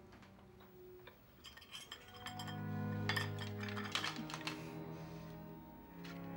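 Cutlery clinking against plates and dishes as people eat, with low sustained music notes coming in about two seconds in and carrying on over the clinks.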